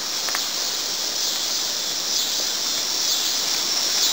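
Steady high-pitched chorus of insects, a continuous shrill hiss with slight pulsing.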